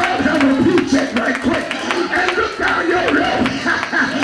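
A preacher chanting his sermon in a sung, drawn-out cadence at a microphone, backed by music with drum hits.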